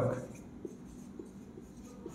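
Marker pen writing on a whiteboard: faint strokes with a few light ticks.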